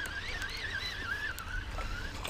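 Shimano Tranx 400HG baitcasting reel being cranked in against a hooked fish. Its gear whine wavers up and down with each turn of the handle.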